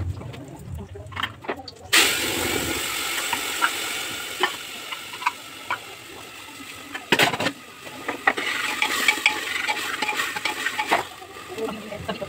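Food sizzling in hot oil in a pan on a stove, starting suddenly about two seconds in as something goes into the pan, with steady hissing and small crackles. A few sharp metal clanks of utensils on the pan come in later.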